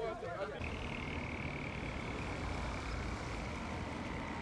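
Street ambience: a steady low rumble of traffic with a thin, steady high-pitched tone above it, after a moment of voices that breaks off about half a second in.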